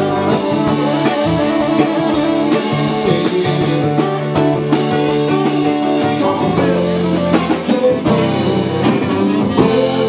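A live band playing: saxophone holding and bending long notes over strummed acoustic guitar and a drum kit keeping a steady beat with cymbals.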